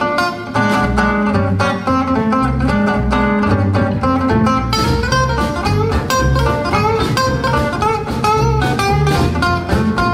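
Acoustic guitars playing a lively tune together with quick picked melody lines, and low bass notes coming in underneath about a second in.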